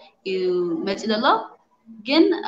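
Only speech: a woman talking, breaking off briefly near the end.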